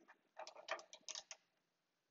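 Faint, irregular light clicks and taps of a small wrench being fitted onto the metal guard stop of a jointer table, about half a dozen over a second.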